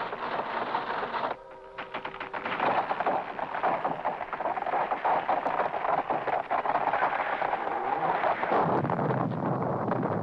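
A large tree toppling: a brief creak, then a long stretch of crackling as it gives way, and a low rumbling crash starting about eight and a half seconds in as it comes down.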